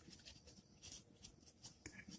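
Faint scratching of a pen on paper in a string of short strokes as it writes out an equation by hand.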